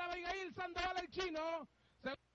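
A man speaking in Spanish: the horse-race caller announcing, his voice breaking off near the end.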